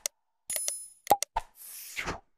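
Subscribe-and-notify animation sound effects: short pops and clicks, a bell-like ding that rings for about half a second, a few more clicks, then a brief whoosh near the end.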